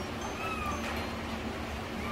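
A young kitten gives one short mew about half a second in as it is held and dosed with oral dewormer from a syringe.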